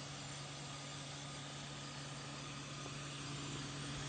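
A faint, steady low hum over a hiss of background noise.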